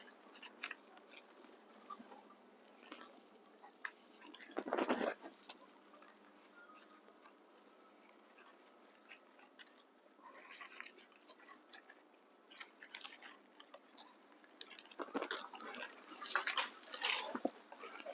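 Hands working an overgrown calathea triostar loose from its pot: faint, scattered crunching and rustling of soil, roots and leaves, with a louder burst about five seconds in and a cluster of scraping, crunching noises near the end.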